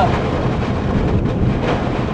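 Strong storm wind and heavy rain rushing against a car, heard from inside the cabin as a steady, dense noise.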